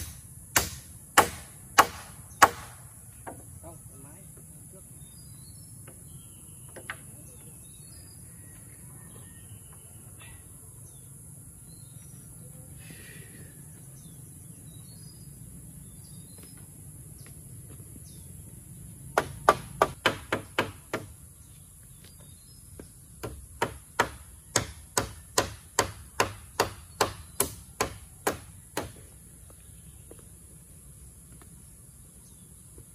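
Sharp, ringing strikes of a hand tool on round wooden poles of a pole frame. There are about five strikes half a second apart at the start, a quick run of about eight past the middle, then a steady series of about two to three strikes a second near the end.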